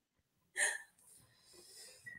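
Mostly quiet, with a single short, breathy vocal sound from one person about half a second in.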